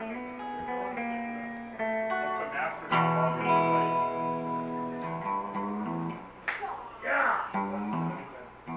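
Electric guitar played through an amplifier: single held notes that ring on and change pitch every second or so, with a sharp click and a short noisy scrape near the end.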